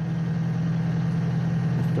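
A steady, unbroken low mechanical hum, like an idling engine, with no strikes or bangs.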